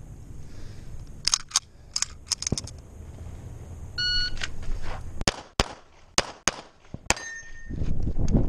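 An electronic shot timer beeps once, about four seconds in. About a second later a pistol fires five quick shots over roughly two seconds. A few light clicks come earlier, before the beep.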